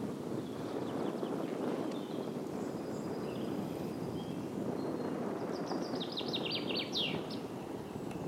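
A songbird sings one short phrase of quick repeated high notes ending in a falling flourish near the end, over a steady low outdoor noise.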